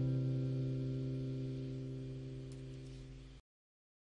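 A guitar's last sustained chord rings out and fades steadily, with no new notes played. It cuts off abruptly to silence about three and a half seconds in.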